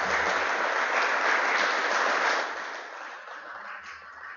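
Audience applauding, the clapping fading away over the second half.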